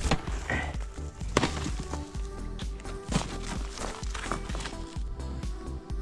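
Background music with a steady beat, over which a hammer prying into a dry, crumbly abandoned ant hill gives several short knocks and crunches of breaking earth, the sharpest right at the start.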